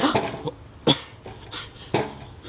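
Steel head of a Cold Steel Demko Hawk chopping into a wooden beam: two sharp chops about a second apart, after a short breathy exhale at the start.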